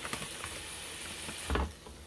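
Ground-beef patty sizzling in a hot waffle maker, a steady crackling hiss with small ticks. About a second and a half in there is a low thump as the waffle maker's lid is lifted, and the hiss drops away after it.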